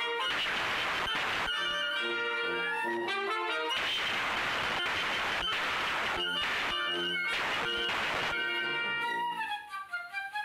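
A small wind band of flute, clarinet, trumpets, alto saxophone and tuba playing a march together, sight-reading it. Three long hissing washes of noise lie over the music, and the playing thins out for a moment near the end.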